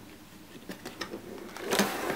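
Plastic cutting-plate sandwich handled on a Fiskars FUSE die-cutting machine's platform: a few light taps as it is settled, then a louder scraping slide near the end as it is pushed up to the roller.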